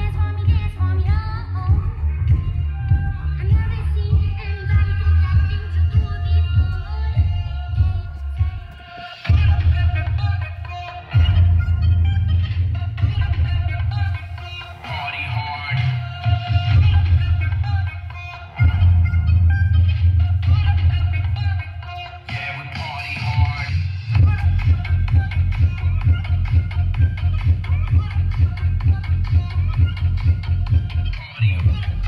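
Music played loud through a DJ sound system's big bass cabinets and top speakers with no tweeters working, so the sound is heavy in bass and thin in the highs. The bass drops out and comes back a few times.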